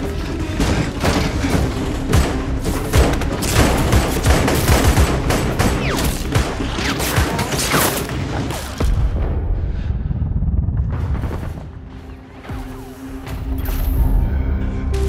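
Film sound of heavy, rapid automatic gunfire with bullets striking around, layered over a tense orchestral score. The shooting is densest for the first nine seconds or so, then thins out while the music carries on.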